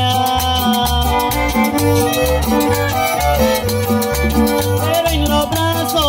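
Live band music: two violins bowing the melody over a drum kit, conga and bass guitar in a steady Latin dance beat, with the bass notes falling about twice a second.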